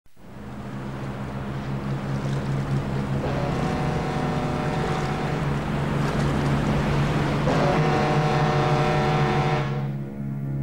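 A cartoon motor vessel's engine hums steadily under the rush of water past its hull, fading in at the start. Twice a held higher tone sounds over it for about two seconds, and the whole sound cuts off suddenly just before the end.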